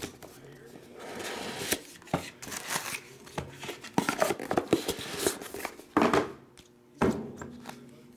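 Handling a cardboard trading-card box: scraping and rustling as it is slid open, with irregular sharp taps and knocks as the lid comes off its foam insert and a card in a plastic holder is lifted out.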